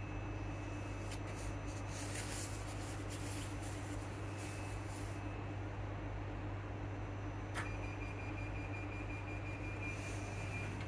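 Interior of a Class 334 electric multiple unit running between stations: a steady low hum with rumble and hiss. About three-quarters of the way through, a sharp click is followed by a thin, steady high tone.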